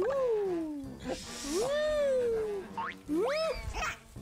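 A high voice making three drawn-out, sliding whine-like calls: a long falling one, then a rise and fall, then a short rise near the end. Faint background music runs underneath.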